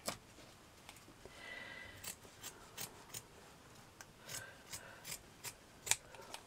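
Scissors snipping through felt as a felt backing is trimmed round to size: a faint rub early on, then a run of about nine short cuts beginning about two seconds in.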